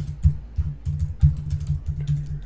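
Typing on a computer keyboard: a quick, irregular run of key clicks with dull low thuds under them.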